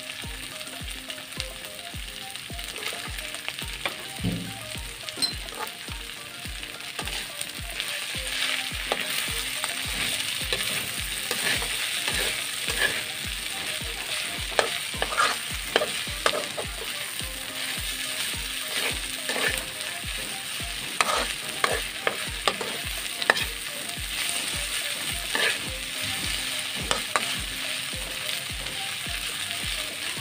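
Corn kernels and onion sizzling in a wok, with string beans in the pan partway through, while a metal spatula stirs and scrapes against the pan in repeated sharp scrapes and clacks.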